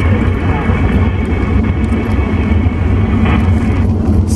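Static hiss and steady whistling tones from a President Lincoln II+ CB radio's speaker in USB mode while it is tuned to 27.575 MHz. They cut off near the end as the set goes to transmit. A steady car road and engine rumble fills the cabin underneath.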